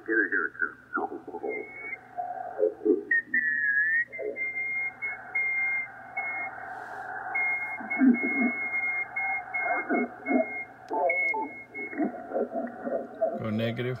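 Lower-sideband voices from the 40 m amateur band coming through a Yaesu FTdx5000MP receiver. The audio sounds narrow and muffled, cut off sharply by the DSP width filter. A thin, steady high-pitched whistle rides at the top of the passband from interference on an adjacent frequency, and its pitch dips briefly about three seconds in as the radio is retuned.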